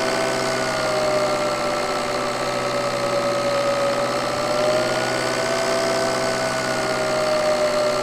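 Recorded turbocharged engine running steadily with an annoying turbo whine on top. The whine is one strong pitched tone with a fainter, higher tone above it, both drifting slightly down and back up in pitch over the engine's noise. This whining is the sound-quality fault being investigated.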